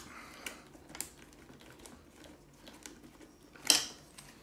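Hands handling the plastic body of a Bruder toy telehandler: a few faint light clicks of plastic parts, then one sharper clack near the end as a part is pressed into place.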